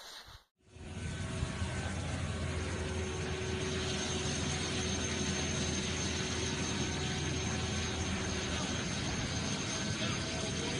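Steady jet-aircraft engine noise on an airport apron: a continuous even roar with a thin high whine held over it. It starts abruptly about half a second in.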